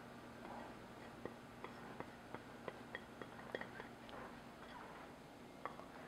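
Faint light taps, about three a second, as a small dish is tapped over a glass mixing bowl to empty dry ingredients into it. A single click comes near the end as the dish is set down.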